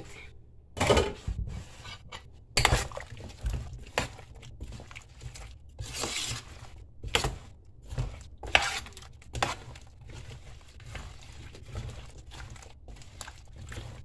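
A spoon stirring a thick salad of chopped apples and canned fruit in cream in a large metal pot, with irregular scrapes and knocks against the pot.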